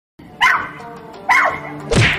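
Two dog barks about a second apart over a steady background music track, then a short low sound that drops sharply in pitch near the end.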